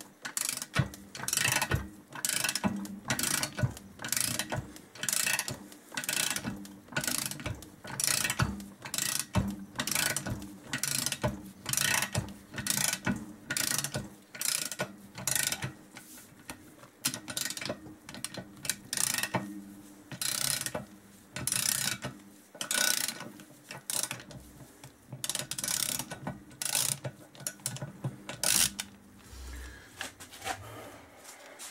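Socket ratchet handle on a grip-type cylinder stud removal tool, swung back and forth over and over, its pawl clicking in a short burst on each swing, about one and a half swings a second. It is unscrewing a cylinder stud anticlockwise out of the engine's upper crankcase.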